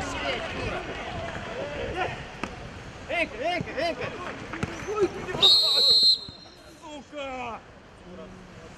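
Footballers shouting on the pitch with a few thuds of the ball being kicked, then a referee's whistle blown for about half a second, a little over halfway through, stopping play for a foul.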